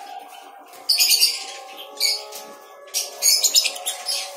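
Caged lovebirds calling in a colony aviary: shrill, high chirps in short bursts, about a second in, again at two seconds, and a longer run of calls near three seconds.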